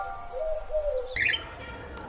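Bird calls at the tail of an intro jingle: a low, arching cooing note about half a second in, then a quick burst of high chirps just after a second, as the last held music notes fade out.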